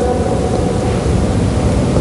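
Steady background noise between phrases of a man's talk: an even hiss with a low rumble and no distinct events.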